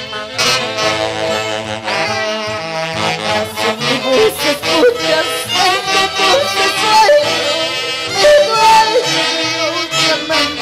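A live band playing Peruvian folk music, with a saxophone section and brass carrying the melody over a steady beat, and a woman singing high over the band.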